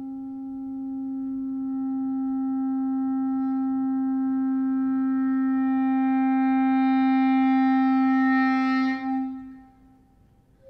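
Solo clarinet holding one long low note in a slow crescendo that grows louder and brighter for about eight seconds. It breaks off about nine seconds in with a brief last flicker and dies away.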